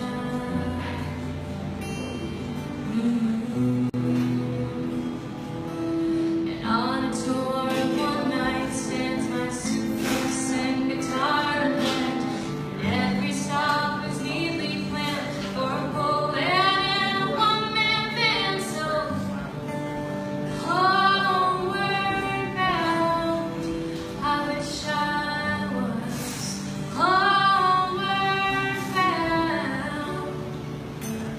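Live acoustic duo: two acoustic guitars play an intro, and a woman's solo singing voice comes in about six or seven seconds in and carries the melody over the guitars.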